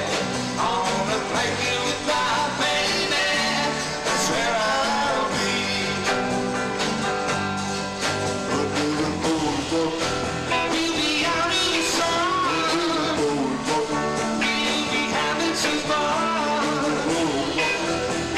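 A live rock-and-roll band with electric guitar, bass, drums and keyboard plays a song while a man sings lead into a microphone.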